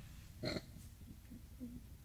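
A quiet moment over a steady low hum: a short breathy vocal sound from a woman, like a quick exhale or grunt, about half a second in, then faint low murmuring.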